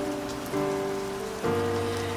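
Steady rain falling, mixed with the soft held chords of a ballad's instrumental accompaniment, which change twice.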